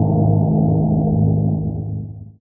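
A deep, low droning sound effect played over a title card, a steady stack of low tones that begins fading near the end.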